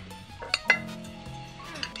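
Metal cutlery clinking against plates, two sharp clinks a little over half a second in, over soft piano background music.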